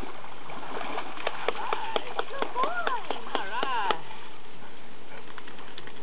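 A voice rising and falling in pitch, with a run of short sharp clicks or splashes between its sounds, about one to four seconds in, over steady background noise.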